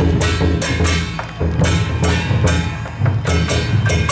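Loud percussion music: heavy drum beats under repeated ringing clashes, like cymbals, in a driving rhythm.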